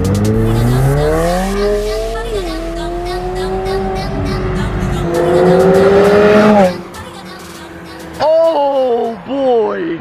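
McLaren 720S twin-turbo V8 accelerating hard, its note climbing in pitch. It drops with an upshift about two seconds in, then climbs again to its loudest about five to six seconds in and cuts off suddenly. A person's voice exclaims near the end.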